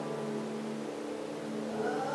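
A live band's soft sustained chord, held steady, with a lower bass note coming in near the end as the music begins to build.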